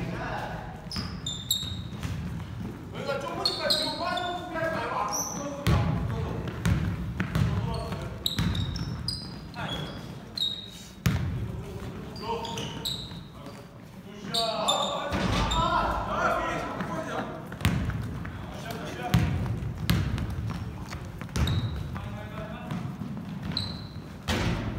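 Basketball game in a gym: the ball bouncing on the hardwood floor with players' footsteps and short, high sneaker squeaks, and players calling out to each other twice during play.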